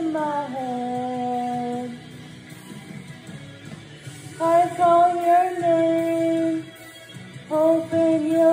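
A female voice singing long, wordless held notes over a karaoke backing track. The first note slides down near the start and is held, then the voice drops away before two more long notes come in, one about halfway through and one near the end.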